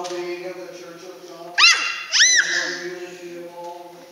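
Church organ holding sustained chords, broken about one and a half and two seconds in by two loud, short squeals, each sweeping up and then back down in pitch.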